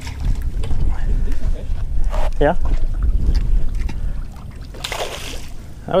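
A low rumble on the microphone, then a brief splash with a hiss of spray about five seconds in as a hooked bass thrashes at the surface on a bent rod.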